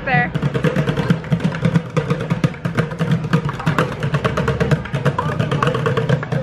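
Street bucket drummers hitting upturned plastic buckets with drumsticks, a rapid, steady run of strikes with a hollow low thud underneath.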